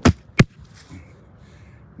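Water meter box lid being pressed into its plastic cover: two sharp knocks about a third of a second apart as it seats.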